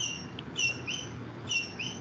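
Stylus squeaking against a tablet's glass screen in short handwriting strokes: about half a dozen brief high squeaks, some rising in pitch, with one light tap.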